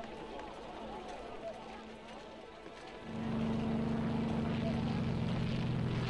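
A faint, wavering background for the first half, then a steady, low engine drone starts abruptly about three seconds in and holds at an even pitch.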